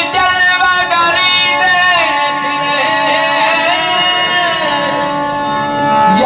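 Live qawwali music: a voice singing long, gliding lines over steady held accompanying notes.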